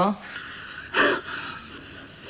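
A woman's short, sharp breath, a gasp or huff, about a second in, over quiet room tone.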